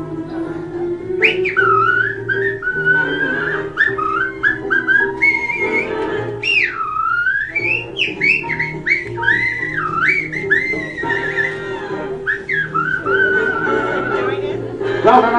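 A man whistling a tune, high warbling notes with quick trills and wide swoops, the deepest swoop about six and a half seconds in, over recorded backing music.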